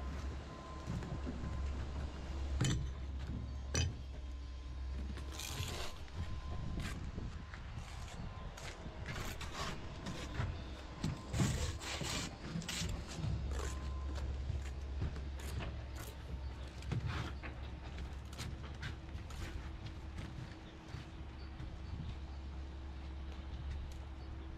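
Bricklaying trowels working mortar against solid concrete blocks and a mortar board: a string of short scrapes and knocks over a steady low rumble.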